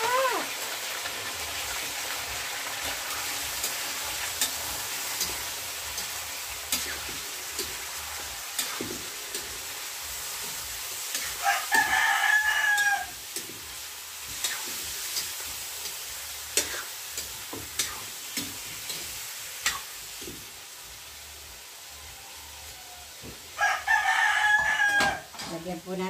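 Pork pieces sizzling as they fry in a wok over a wood fire, with scattered clicks and scrapes of a metal spatula against the pan. A rooster crows twice, about halfway through and again near the end.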